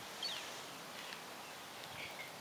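Faint steady background hiss, with one short, high, falling chirp about a quarter of a second in.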